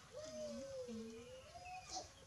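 A baby monkey's long drawn-out call that wavers in pitch and rises toward the end, with birds chirping faintly in the background.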